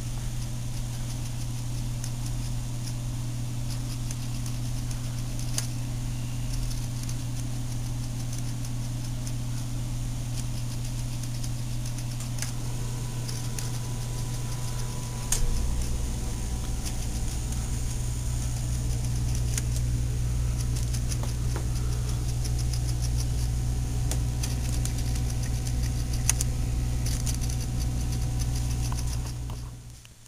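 Steady low machine hum, with a deeper rumble joining about halfway through and a few faint clicks over it; it cuts off just before the end.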